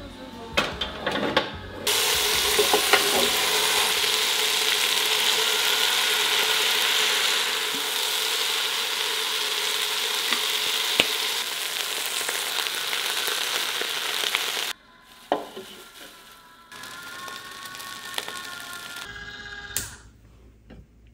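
Kimchi fried rice sizzling in a motorised, tilted cast-iron roll pan as its paddle stirs the food. A few knocks come in the first two seconds. The loud sizzle then runs until it cuts off suddenly about three-quarters of the way in, leaving a much quieter stretch.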